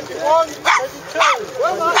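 A run of short animal calls in quick succession, several a second, each a brief call with a clear pitch that rises and falls.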